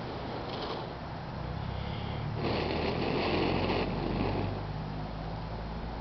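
A person blowing into a smouldering tinder bundle to coax the ember into flame: short puffs, then one long, loud breath of over a second about two and a half seconds in, then another short puff.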